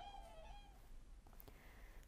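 Near silence, with one faint short call in the first half-second that dips slightly in pitch, from whooper swans on the water.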